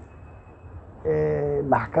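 A man's speaking voice: a pause of about a second, then one long, flat-pitched hesitation vowel, and speech picking up again near the end.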